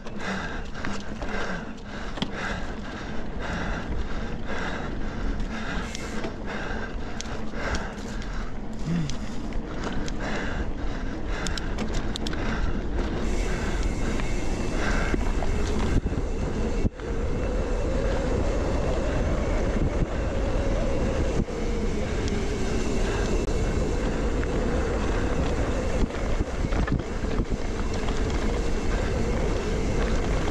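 Mountain bike ridden fast down a dirt forest singletrack: steady wind rush on the body-mounted camera's microphone, with tyre noise on the dirt and the frame and parts knocking and rattling over bumps.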